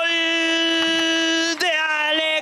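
Football commentator's long, drawn-out goal cry held on one steady pitch, breaking off about one and a half seconds in into shorter shouted words.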